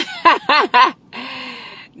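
A woman laughing: several short "ha"s in the first second, then a breathy out-breath lasting almost a second.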